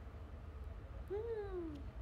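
A single short hummed "mmm" from a woman's voice, rising a little and then sliding down in pitch about a second in, over a low steady room hum.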